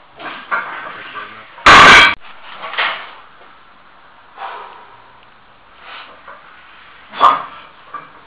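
A 110 kg steel strongman log dropped at the end of a set, landing with one very loud crash about two seconds in. Heavy breathing follows, and a single sharp knock comes near the end.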